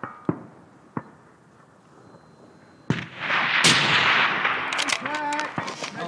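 A scoped precision rifle fired once, about three seconds in, its report rolling on for about two seconds. A few light clicks come before it in the first second.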